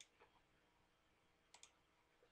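Near silence with a few faint clicks: one at the start, a weaker one just after, and a quick pair about one and a half seconds in.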